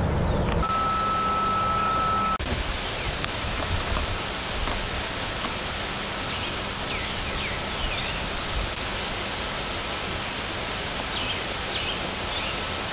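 Steady outdoor rushing noise with a few short bird chirps. It is preceded by a low rumble and then a steady high tone, which end abruptly about two seconds in.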